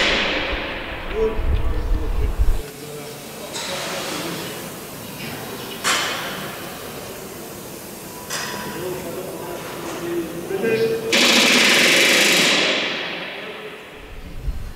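Pneumatic rivet gun driving rivets into the aluminium wing skin of a Lancaster bomber, in short bursts of rapid hammering blows. A longer, louder burst comes about eleven seconds in.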